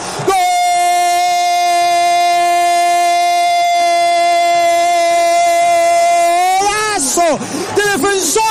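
A radio football commentator's goal cry: one long shout of "golazo" held at a steady pitch for about six seconds, celebrating a goal. Near the end it breaks into rapid excited words.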